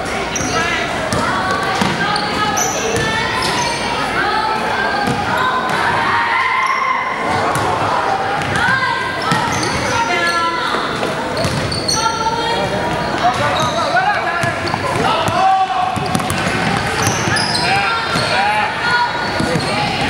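Basketball being dribbled on a hardwood gym floor during a youth game, with sneakers squeaking and players and onlookers calling out, all echoing in the large gym.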